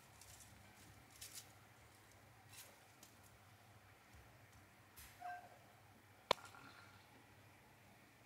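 Very quiet handling sounds as sliced onion and garlic cloves are dropped by hand into a nonstick saucepan. A short faint squeak comes about five seconds in, and a single sharp click a little after six seconds.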